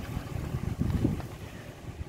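Wind buffeting the microphone in an uneven low rumble, with sea waves breaking faintly on a pebble shore behind it.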